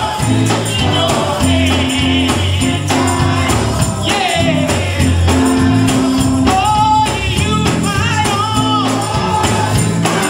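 Gospel choir singing over an instrumental accompaniment with held bass notes, a tambourine keeping the beat and hand claps.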